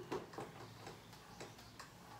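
Felt whiteboard eraser wiping the board in short strokes, about five in two seconds, faint, the first the loudest.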